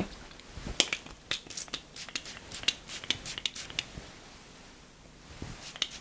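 Quick, irregular crisp crackling and rustling of hands working through dry hair as a shine product is put on, with a pause, then a few more crackles near the end.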